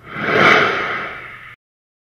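A single whooshing noise sound effect for the end logo. It swells up over about half a second, fades, and cuts off abruptly about a second and a half in.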